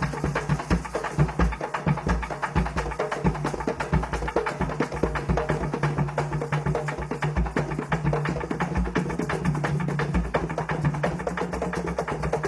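Afro-Venezuelan San Juan drum ensemble playing a fast, dense, steady rhythm on skin-headed hand drums, with maracas shaken along.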